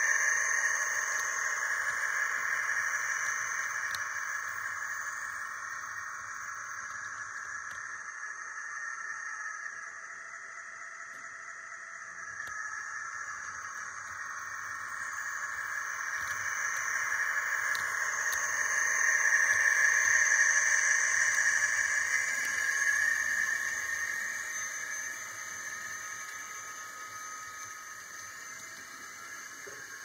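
HO scale model train running along the track: a steady whine from the locomotive's motor and gearing, with wheel noise on the rails. It fades, swells to its loudest about twenty seconds in, then fades again as the train moves away.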